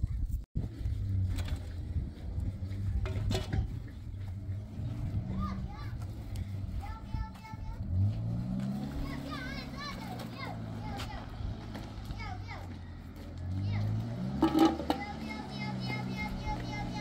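Pickup truck engine running steadily, revving up twice as the truck moves around, with children's voices calling out in the background.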